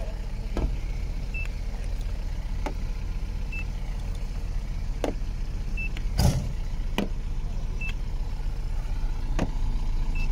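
Hand-held paint thickness gauge being pressed against a car's steel body panels: a short click as the probe touches down, then a brief high beep a moment later as each reading registers, repeating about every two seconds. The readings mark the paint as original. A heavier single knock comes about six seconds in, over a steady low rumble.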